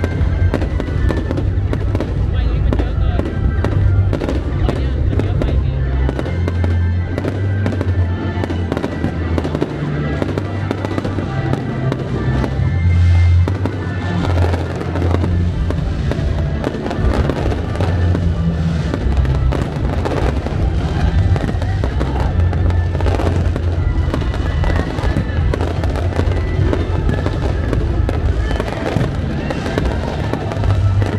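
Fireworks display bursting and crackling repeatedly throughout, over loud music with a heavy bass.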